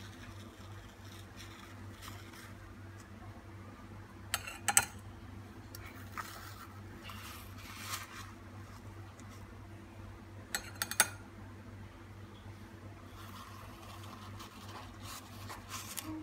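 A metal spoon scraping vanilla ice cream out of a tub and knocking it into a glass tumbler, with two short clusters of sharp clinks, about four and a half seconds in and again near eleven seconds, and softer scraping between.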